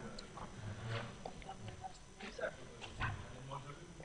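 Faint background murmur of low voices with small scattered handling ticks, and no clear speech.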